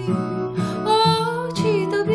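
A woman singing a slow song over instrumental accompaniment, her voice gliding between long held notes.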